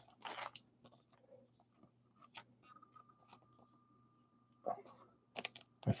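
Faint, scattered rustles and clicks of trading cards being handled by hand, with a faint steady high tone in the middle.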